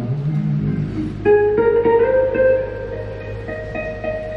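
Acoustic guitar picking a short run of single notes that ring out after the last sung word, closing the song. A low steady note sounds beneath it.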